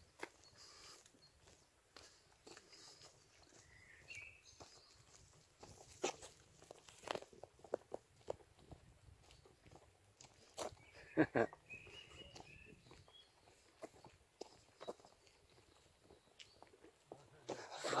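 Faint outdoor quiet broken by scattered, irregular soft clicks and knocks from walking with a hand-held phone: footsteps and handling of the phone.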